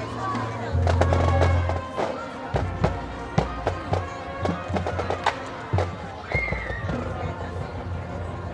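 High school marching band playing its halftime show: sustained low notes, loudest about a second in, under many sharp drum hits.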